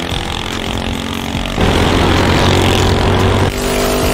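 Engine of a motorized wheelie-bin racer running as it drives down a drag strip. There is a steady engine note, with a louder, rougher stretch from about a second and a half in until shortly before the end.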